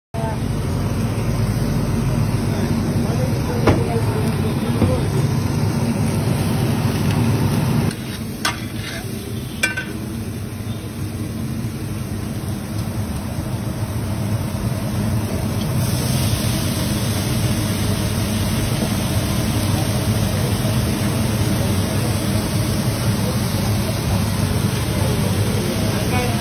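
Chopped onions and vegetables frying on a large flat iron tava, heard against a steady low rumble of street-stall background noise, with a few sharp metal clinks. The background changes abruptly about eight seconds in.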